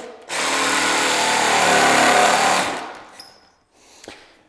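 Cordless jigsaw cutting into a hardwood floor board, squaring out a drilled starter hole. It runs steadily for about two and a half seconds, then winds down and stops.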